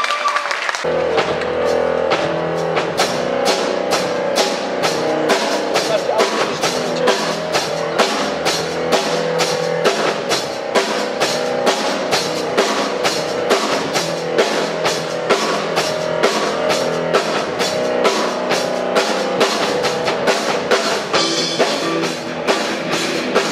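Live rock band playing: electric guitars, bass guitar and drum kit. The band comes in about a second in, and the drums keep a steady beat of about three hits a second.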